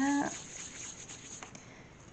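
Faint soft handling of a ball of bread dough being rolled round between the hands, with a light tap about one and a half seconds in.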